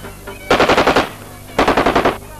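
Two short bursts of rapid automatic gunfire, the first about half a second in and the second near the end: celebratory firing at a wedding.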